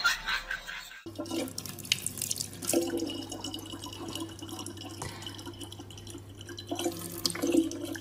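A thin stream of water from a tap pouring steadily into the neck of a plastic water bottle, a continuous trickle and splash. In the first second there is a louder, noisy sound that cuts off abruptly.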